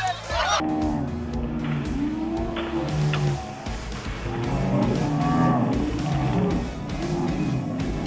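Voices slowed far down: several people's cries and laughter stretched into long, deep, overlapping moans that sound almost like lowing, starting abruptly about half a second in.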